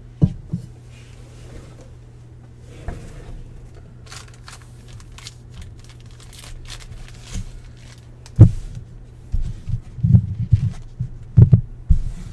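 Baseball cards being handled and flipped through by hand: thin card clicks and rustles through the middle, with several louder dull knocks in the last few seconds, over a steady low hum.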